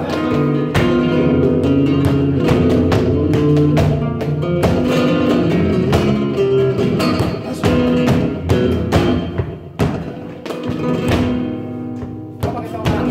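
Flamenco guitar playing, with plucked runs and sharp strummed strokes, accompanied by rhythmic hand clapping (palmas).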